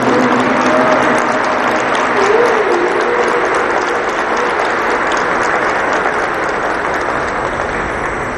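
A crowd of people applauding, steady dense clapping that eases slightly toward the end.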